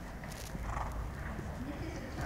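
Soft hoofbeats of a horse walking on sand arena footing.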